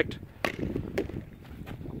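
Sharp knocks of a sliotar being struck with a hurl and rebounding off a concrete block wall, two knocks about half a second apart.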